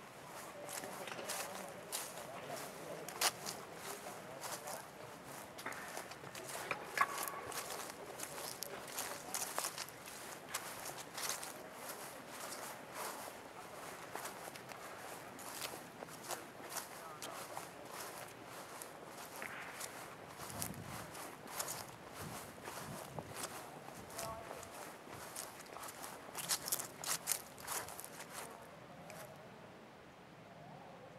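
Footsteps of a person walking across a grass lawn: many short, irregular steps.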